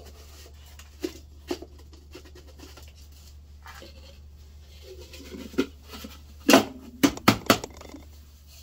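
Plastic clicks and knocks from a small electric food chopper's bowl and lid being handled and taken apart, its motor off. There are a few sharp clicks in the first half, then a quick run of louder knocks a little over six seconds in, over a steady low hum.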